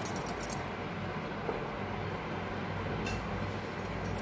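Steel spoon clinking lightly against a stainless steel bowl as spice powder is tipped onto raw chicken: a quick cluster of clinks in the first half second and one more about three seconds in, over a steady low hum.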